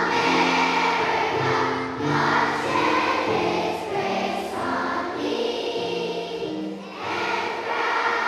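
A large group of schoolchildren singing a song together, moving through notes that are each held for about half a second to a second.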